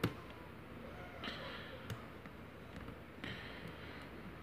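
Lock pick and tension wrench working the pin stack of a brass padlock: faint metallic ticks and scrapes, with one sharp click at the very start and a smaller one about two seconds in.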